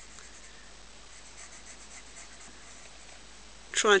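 Faint scratching of a pencil drawing on the cane blade of a double reed, marking out where the blade will be scraped.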